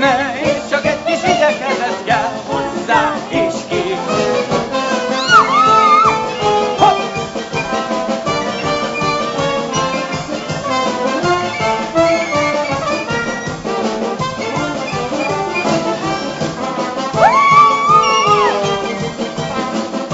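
Live theatre orchestra with prominent trumpets and trombone playing an upbeat, jazzy dance number. Two swooping high notes rise and fall, one about five seconds in and one near the end.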